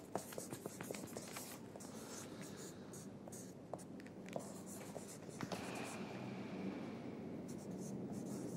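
Ballpoint pen writing on paper: quiet, irregular scratching strokes, busiest in the first half.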